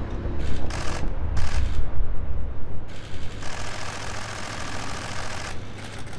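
Street ambience with low traffic rumble and several rapid bursts of clicking from press camera shutters, in short bursts during the first two seconds and a longer run of clicking from about three and a half to five and a half seconds in.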